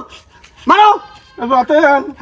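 A man's voice in short high-pitched cries: one rising and falling about two-thirds of a second in, then a wavering stretch in the second half.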